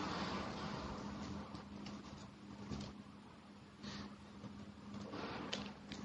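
Faint room tone over an audio feed: a steady low hum and light hiss, with a few soft clicks scattered through it.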